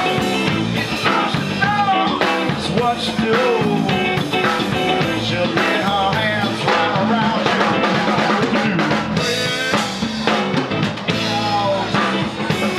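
Live rock band playing an instrumental stretch: electric guitar lead with bent notes over a drum kit and electric bass.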